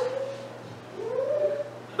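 A pause in speech: a voice trails off, then about a second in comes one short pitched vocal sound that rises and falls in pitch.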